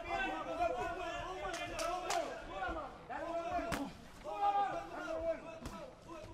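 Men's voices calling out around a boxing ring, with a handful of sharp smacks of boxing gloves and punches landing.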